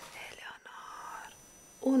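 Speech only: a woman's breathy, whispered voice for the first second or so, a short lull, then her spoken voice starting again near the end.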